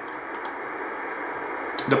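Steady hiss of band noise from a shortwave communications receiver tuned to 28.200 MHz in CW mode, with no beacon's Morse tone audible.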